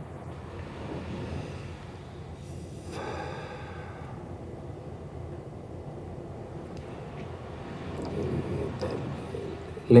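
Steady quiet room hiss, with a man's audible breath out about three seconds in and faint breathing near the end.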